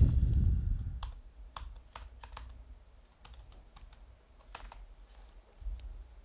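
Computer keyboard typing: a dozen or so separate key clicks at an irregular pace, following a low rumble that fades out within the first second.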